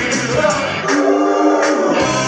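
Live rock band playing with a male lead voice singing, electric guitar and trumpet in the lineup. About a second in the bass and drums drop out for roughly a second, leaving held notes, and the full band comes back in near the end.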